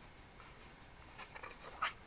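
Quiet room tone, then a few faint rustles and light taps of a card box card being handled in the second half.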